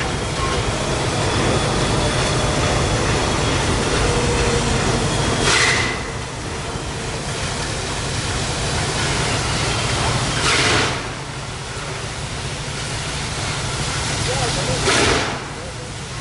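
N&W 611, a J-class 4-8-4 steam locomotive, working slowly and hard to move a heavy excursion train. Three loud exhaust chuffs come about five seconds apart over a steady low rumble.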